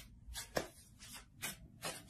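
Tarot cards being shuffled and handled: a string of faint, short flicks and rustles, about one every third of a second.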